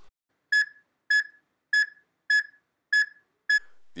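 Six short, high electronic beeps, evenly spaced a little over half a second apart.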